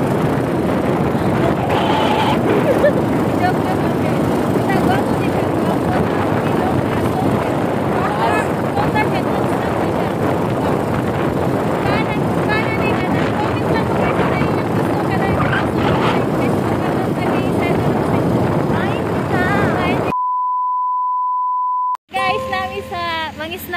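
Steady rush of wind on the microphone with vehicle noise while riding in the open, voices faintly audible through it. Near the end the noise cuts out abruptly and a single steady beep tone sounds for about two seconds.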